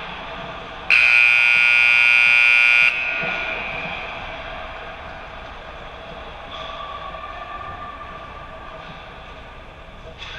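Ice rink's scoreboard buzzer sounding once, loud and steady, for about two seconds starting about a second in, then cutting off with an echoing tail in the arena.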